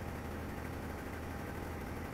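Sinker EDM machine running as its copper electrode cuts under oil: a steady low hum with a faint thin whine above it.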